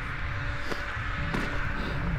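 Outdoor background: a low rumble with a faint steady hum, and a couple of soft clicks.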